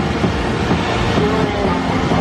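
Large fairground pendulum ride's machinery running, a steady mechanical noise with fairground din mixed in.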